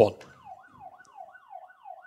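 Electronic siren-like sound effect: a single tone swooping down in pitch over and over, about three times a second, marking the end of the countdown in a quiz.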